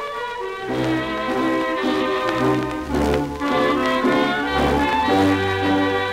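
Instrumental introduction of a 1935 tango played by a 1930s dance orchestra, heard from a worn 78 rpm shellac record transferred without cleanup, with surface hiss under the music. About a second in, the full band comes in with a low bass line, beating out a steady tango rhythm under the melody.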